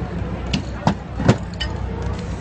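Steady city-street traffic noise, with four sharp clacks of spray-paint cans being handled, spaced unevenly across the two seconds.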